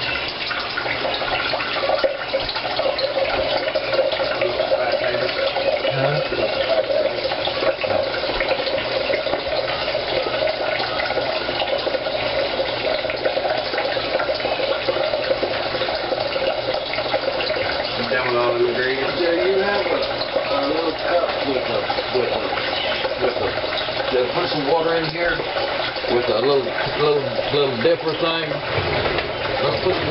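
Water running steadily from a kitchen tap into a sink.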